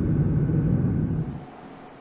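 Steady low rumble of a light aircraft in flight, fading out about a second and a half in.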